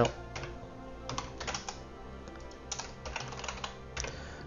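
Computer keyboard typing in several quick bursts of keystrokes, over faint steady background tones.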